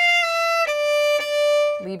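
Solo violin playing a few slow, separate bowed notes, stepping down to a lower note held for about a second. It is a slowed practice run of a fast passage in third position with an extension, played with the first finger left down on the string.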